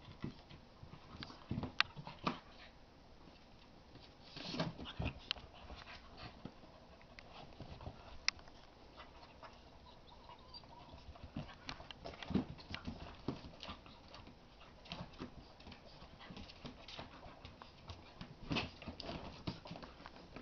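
Two puppies, an English x Olde English Bulldog and a Basset Hound x Pug, play-fighting: scuffling and knocks on the floor with short bursts of dog noise scattered through.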